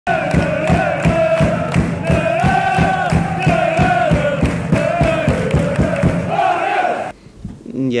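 Sports-channel intro music: a fast drumbeat under chanting, crowd-like voices, cutting off suddenly about seven seconds in.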